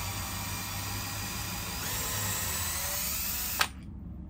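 Cordless drill running steadily, spinning a cut-off Allen key used as a hex bit on the sensor's bolts. It stops with a click about three and a half seconds in.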